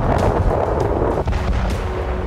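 Explosions: a deep continuous rumble with a heavy blast at the start that dies away after about a second, and several sharp cracks through it.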